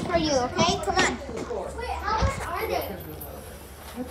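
Children's voices, talking and calling out excitedly, dying down in the last second or so.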